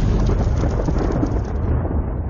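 Thunderstorm sound effect: a long rumble of thunder under a steady hiss of rain, the hiss thinning near the end.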